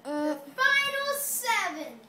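A child singing wordless notes: a short held note, then a higher held note, ending with a long downward slide in pitch.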